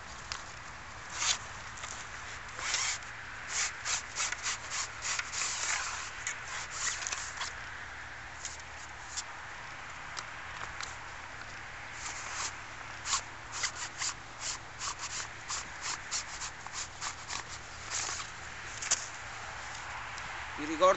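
Cloth rod sleeve being handled as a two-piece surfcasting rod is drawn out of it: a run of short, irregular rustles and scrapes, thinning out for a few seconds near the middle.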